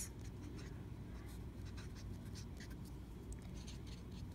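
Felt-tip marker writing on paper: a run of short, faint scratching strokes as letters are drawn.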